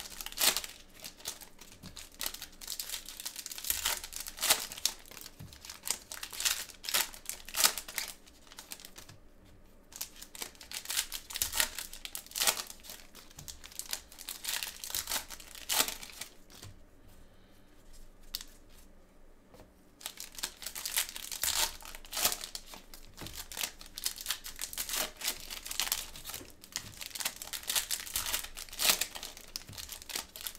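Foil trading-card pack wrappers being torn open and crinkled by hand, an irregular run of crackling rips. There are two quieter pauses, about a third of the way in and again just past the middle.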